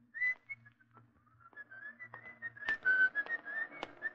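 A person whistling a casual tune: a single high, thin line of short notes that slide and waver in pitch, with a few faint clicks in the second half.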